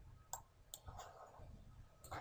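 Two faint computer-mouse clicks in quick succession, otherwise near silence.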